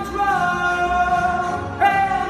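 A man singing a show tune, holding one long steady note, with a new, louder note starting near the end.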